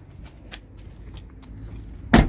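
Low, steady background rumble with a few faint soft clicks.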